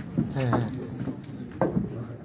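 Indistinct, unscripted voices of people close by, short murmured utterances with a sharp rise and fall in pitch, along with a couple of short knocks.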